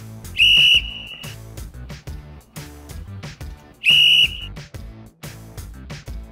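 Two short blasts of a referee's whistle, about three and a half seconds apart, over background music with a steady beat.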